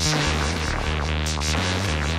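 Goa trance track in a breakdown from a vinyl DJ mix: the kick drum has dropped out, leaving steady low synth bass tones under layered synth patterns.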